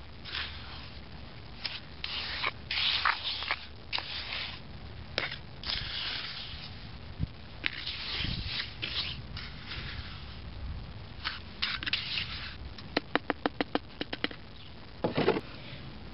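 Metal hand trowel scraping and smoothing wet cement in a plastic bowl, in irregular strokes. Near the end comes a quick run of about eight light taps.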